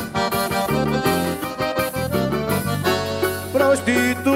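Live forró band music: an accordion plays the melody over a steady bass line.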